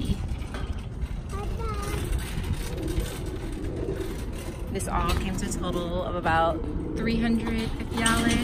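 Plastic shopping cart's wheels rolling over parking-lot asphalt, a steady low rumble, with young children's voices in the second half.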